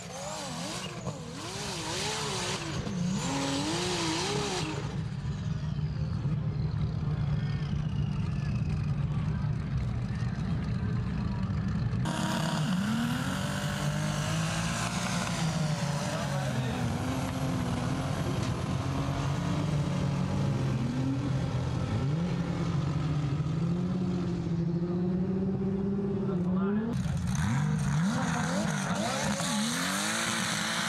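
Modified hill-climb SUV engines at full throttle, revving hard as they climb a sand dune, the pitch rising and dropping again and again through gear changes and wheelspin. The sound changes abruptly twice as one run gives way to the next.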